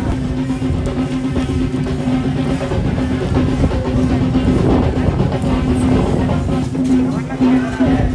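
Procession music: drums beating continuously under a steady held tone that breaks off briefly now and then.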